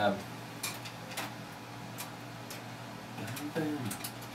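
A few faint, irregularly spaced clicks and taps against quiet room tone, made while desk equipment is being worked, with a brief low voice sound near the end.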